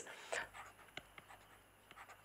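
Pen writing on paper: faint, short scratching strokes with a few light ticks as a word is written in small letters.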